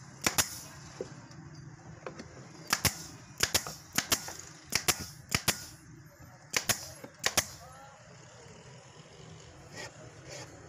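Pneumatic nail gun firing nails into MDF board: about eight sharp cracks, most as quick double snaps, at an uneven pace of roughly one a second, stopping about three-quarters of the way through.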